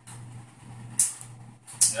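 Steady low hum, with a short hiss about a second in and a spoken word starting at the very end.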